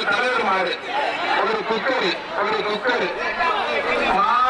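Men's voices talking continuously, with crowd chatter behind.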